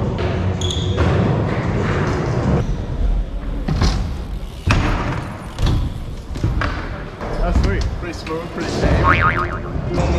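BMX bikes riding wooden skatepark ramps and ledges in a large echoing hall, with repeated knocks and thuds of tyres and pegs hitting the ramps and landing, and a short high squeak about half a second in.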